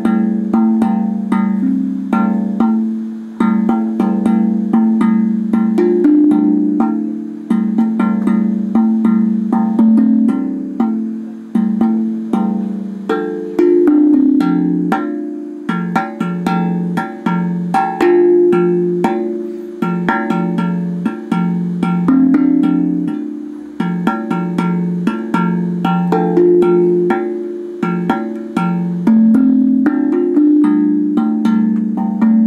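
DreamBall steel tongue drum played with bare fingertips: a continuous, quick run of struck notes, each ringing on under the next.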